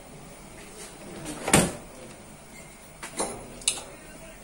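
Tools being handled on a wooden workbench: one heavy knock about a second and a half in, then two sharper clicks near the end, as a soldering iron is taken up for work on a circuit board.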